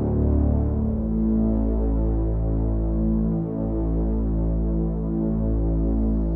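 Ambient meditation music: a low, sustained synthesizer drone of several steady tones, its chord shifting about a second in.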